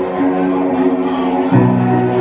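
Live band music: a keyboard and an electric guitar holding sustained chords, moving to a new chord with a new bass note about one and a half seconds in.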